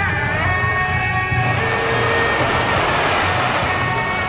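Street-procession band music with reed horns holding long notes over a steady low drone. From about a second and a half in, a loud hissing wash of noise covers the horns for about two seconds.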